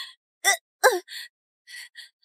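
A woman's short, strained cries and gasps, two pitched ones falling in pitch in quick succession and then fainter breathy ones, as she struggles against being held.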